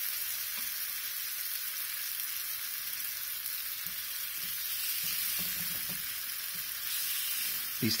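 Thin slices of soy-and-egg-dredged beef sizzling steadily as they fry in a hot frying pan.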